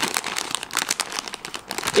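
A crisp packet crinkling as it is handled and turned over in the hand: a steady run of irregular crackles.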